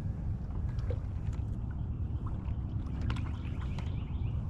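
Steady low rumble around an aluminum jon boat, with a few faint water splashes and light knocks as a spotted bass is lowered over the side and let go.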